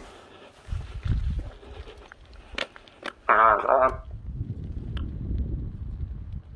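A short wavering voice-like call about three and a half seconds in, over low rumbling wind noise on the microphone, with a single click shortly before the call.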